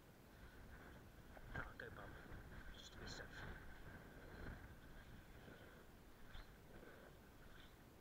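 Near silence, broken by a few faint knocks and scrapes of a hiker's boots and clothing on rock as he shuffles down a slab on his backside, with the sharpest knock about one and a half seconds in.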